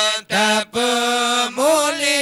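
Men chanting an Acehnese meudike, a devotional dhikr chant, unaccompanied into microphones. Long held notes are broken by brief pauses for breath about a third of a second in, near the middle, and again about one and a half seconds in.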